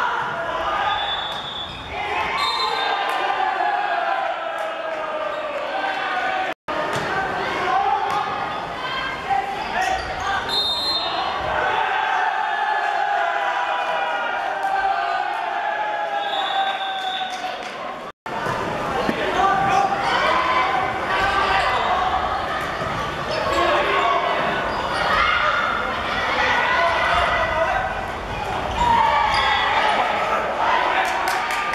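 Indoor volleyball play in an echoing sports hall: ball hits on the wooden court under continuous shouting and cheering voices. The sound cuts out for an instant twice.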